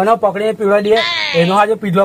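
A man talking animatedly, his voice breaking into a fast-wavering, trembling note about a second in.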